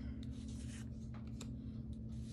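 Foil Magic: The Gathering cards being flipped through by hand, the front card slid against the stack with soft swishes and a few light clicks. A steady low hum runs underneath.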